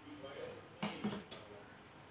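A faint voice, low and indistinct, with a few short hissing sounds about a second in.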